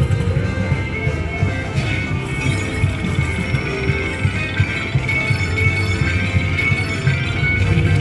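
Slot machine music playing steadily during its jackpot bonus feature, with sustained chiming tones over a low rumble.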